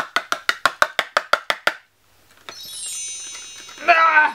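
A rapid, even run of woody clicks, about six a second, that stops about halfway. Then a shimmering cascade of high wind-chime-like notes falls in pitch and rings on: a magic 'sparkle' effect as the trick's snow appears. A woman's voice starts right at the end.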